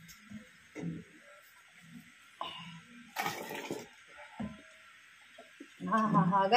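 Water sloshing and splashing in a pot heated over an open wood fire, in several short irregular bursts over a steady faint hiss.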